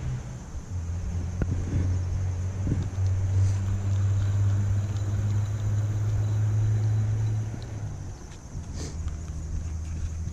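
A low, steady engine hum from a motor vehicle, stepping in pitch about a second in and again near the end, with a few faint clicks over it.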